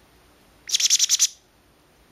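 A baby green-cheeked conure calling: one quick run of about eight high notes, lasting under a second, in the middle.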